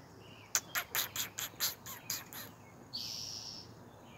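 A small bird calling: a quick run of about eight sharp, high chips over two seconds, then one short high buzzy note about three seconds in.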